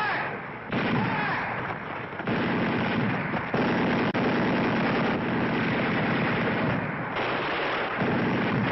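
Dense battle sound effects from a war-drama soundtrack: continuous rifle and machine-gun fire mixed with explosions. The din changes abruptly several times.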